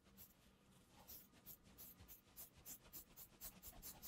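Near silence, with faint light ticks that come closer together toward the end.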